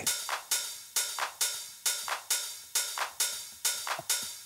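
Electronic drum loop from Bitwig Studio's Drum Machine, played live from a Launchpad Pro: a sparse, steady pattern of short, crisp percussion hits, a few a second, with little bass.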